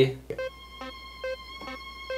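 Mellotron violin sample holding a single high C, a thin steady whistle that sounds like a tea kettle. It starts a moment in, over soft ticks about twice a second.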